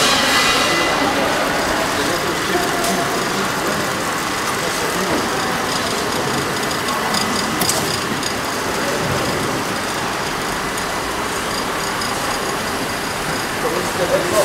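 Steady machinery noise of an automatic carton packing line running, with a few short clicks about halfway through and muffled voices in the background.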